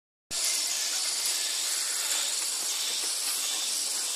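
Steady, high-pitched drone of tropical rainforest insects, with a fast pulsing trill high up in it.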